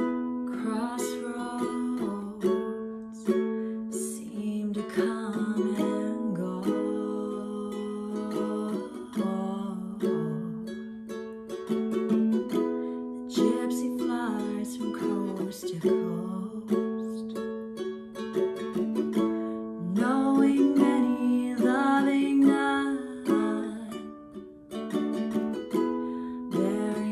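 Solo acoustic ukulele playing a continuous instrumental passage of plucked notes and chords, with no singing.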